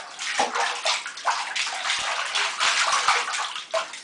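Bathwater splashing and sloshing in a tub in quick, irregular bursts as a small child kicks her legs.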